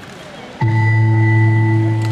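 Wrestling scoreboard's time-expiry buzzer sounding as the match clock runs out to zero: one long, steady, low tone that starts abruptly about half a second in.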